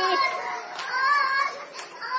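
Many women's voices weeping and wailing aloud together, overlapping high wavering cries with no clear words, as the gathering mourns after the telling of the Karbala suffering.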